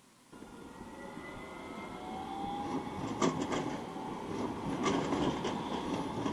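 Tram approaching and passing close by on street tracks: a rumble that builds steadily, with a faint rising motor whine and a few sharp clicks from the wheels on the rails.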